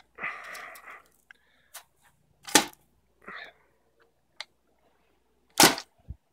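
K-9 Kannon tennis-ball launcher making two loud, sharp snaps about three seconds apart, with a scraping rasp shortly before them near the start.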